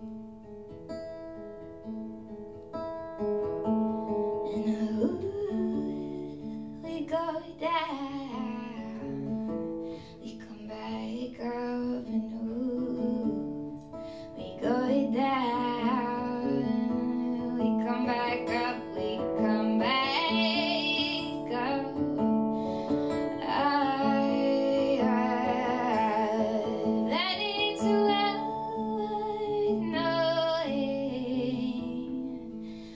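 A woman singing a slow folk song over acoustic guitar. The guitar plays alone at first, the voice comes in about four seconds in, and the singing grows louder from about halfway through.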